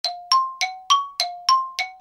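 A quick run of seven bell-like chime notes, about three a second, alternating between a lower and a higher pitch, each struck and ringing briefly.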